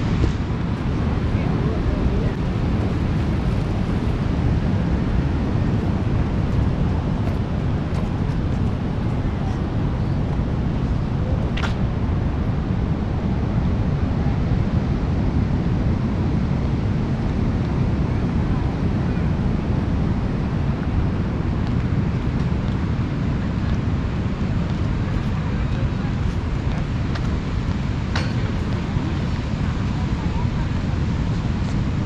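Steady low rumble of wind on the microphone over the wash of sea surf, with two brief sharp clicks, one near the middle and one near the end.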